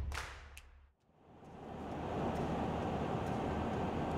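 A short whoosh that fades to silence about a second in, then the steady road and engine noise of a car driving at motorway speed, heard from inside the cabin, fades in and holds.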